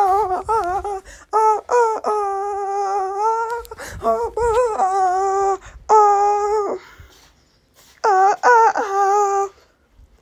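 Wordless singing in a high voice: long, held notes that bend up and down, in phrases separated by short breaks, with a pause of about a second near the end.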